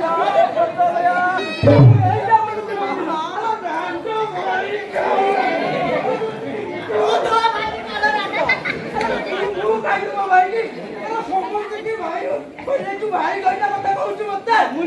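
Raised, overlapping voices of performers speaking over one another, with one low thump a little under two seconds in.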